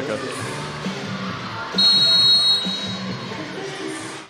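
Arena background music over a large indoor hall, with a referee's whistle blown once about two seconds in, a steady shrill blast lasting under a second, signalling the next serve.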